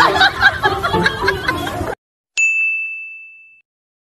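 Music mixed with voices and laughter, cut off abruptly about two seconds in. After a brief silence, a single bright electronic ding, a notification-style chime for the end card, rings out and fades away over about a second.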